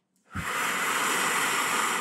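A woman's long, deep breath close to the microphone. It starts about a third of a second in and is held evenly for about a second and a half.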